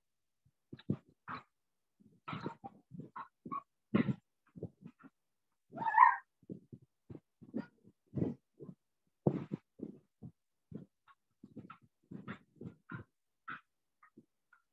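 A dog barking repeatedly in short bursts, picked up through a participant's microphone on a video call, with one louder bark about halfway through.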